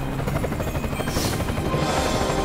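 Helicopter flying overhead, its rotor chopping steadily and rapidly.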